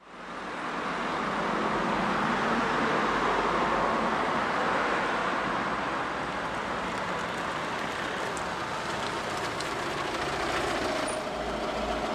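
Road traffic noise: cars passing along a street in a steady rushing wash that fades in quickly at the start.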